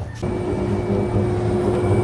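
Induction cooktop running under a pan of oil, giving a steady electrical hum; a thin high tone comes in near the end.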